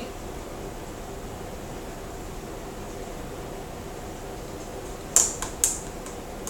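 Tarot cards being shuffled in the hands over a steady low room hum, with a few sharp card snaps about five seconds in.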